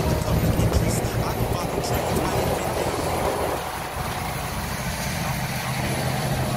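Cab interior of a Peterbilt 389 semi truck at highway speed: the diesel engine runs with a steady low drone under constant road and wind noise.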